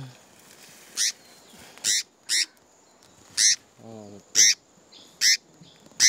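A small bird giving six short, high, sharp calls, roughly one a second. The bird is one that has fallen from its nest, as the host supposes, and it is calling while being rescued.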